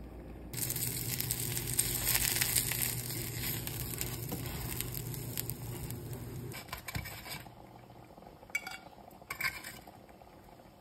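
Battered haddock fillets sizzling in hot olive oil in a frying pan, starting suddenly about half a second in and dying down after about seven seconds. A few clicks of a metal fork against the pan near the end.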